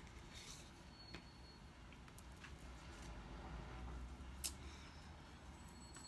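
Mostly quiet room with a few soft taps and clicks of tarot cards being handled and set down on a wooden table. The clearest tap comes a little past four seconds in.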